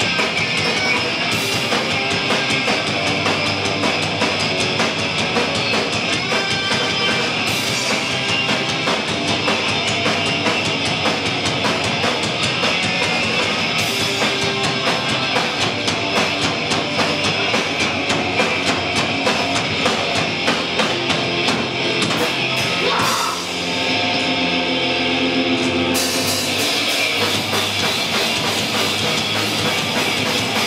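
Live rock band playing loud: drum kit with constant cymbals and distorted electric guitar. About three-quarters of the way through the cymbals drop out briefly and held notes ring for a few seconds before the full band comes back in.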